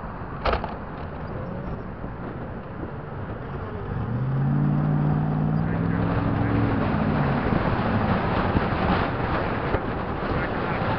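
Steady road and wind noise inside a moving car, with a click about half a second in. From about four seconds in, a passing pickup truck's engine drones for some three seconds, rising and falling slightly as it goes by on the right.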